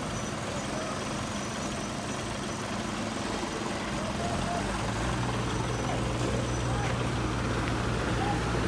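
Concrete mixer truck's diesel engine idling with a steady low hum, which grows louder and deeper about halfway through.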